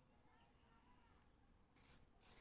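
Near silence, with faint rubbing of wool yarn being drawn through crocheted fabric by a yarn needle, and a brief soft swish near the end as the strand is pulled through.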